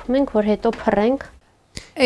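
A woman speaking for about a second, then a short pause and a single sharp click near the end.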